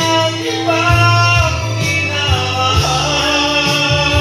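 A man singing loudly into a karaoke microphone over a music backing track, holding long notes that slide between pitches.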